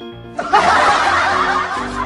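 Dubbed-in laughter sound effect, several people snickering and chuckling together over a music bed, starting suddenly about half a second in.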